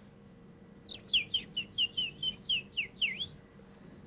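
A man imitating birdsong with quick whistled chirps, about a dozen in two and a half seconds, starting about a second in and ending on a longer swooping note.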